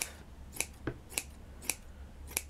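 Scissors cutting through cushion wadding, the blades closing in about five short, sharp snips at uneven intervals.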